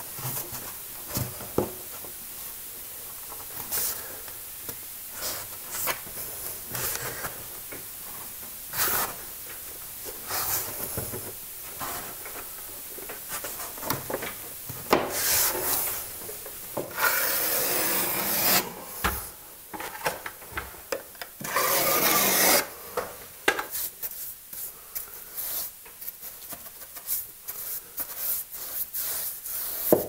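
Rubbing and scraping against freshly fitted coving as it is smoothed into place and excess adhesive is worked off the joint with hands and a brush. Short scrapes and light knocks come irregularly, with two longer scraping strokes of about a second or more each, roughly two-thirds of the way through.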